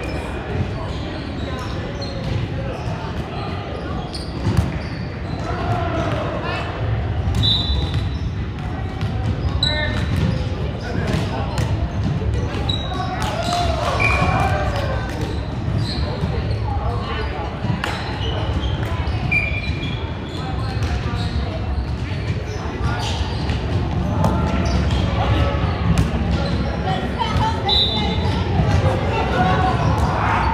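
Echoing sports-hall sound of volleyball play on a hardwood court: scattered thuds of balls being hit and bouncing on the floor, brief high squeaks of sneakers, and players' voices calling and chatting.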